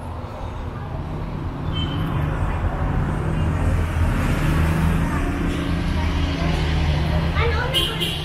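Low engine rumble of road traffic that grows louder over the first few seconds, holds, then eases near the end, with faint voices.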